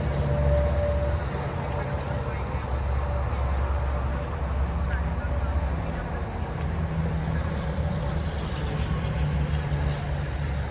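Steady low engine hum of machinery running, with indistinct voices in the background.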